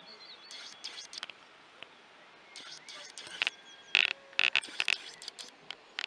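Small birds chirping outdoors in quick clusters of short, high calls, growing louder and more frequent in the second half.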